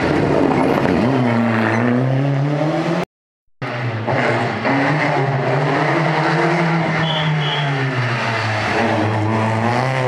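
Rally car engine revving hard through a tight corner, its pitch rising and falling as the driver works the throttle. About three seconds in the sound cuts off for half a second, then a loud, steady engine note carries on with slow swells in pitch.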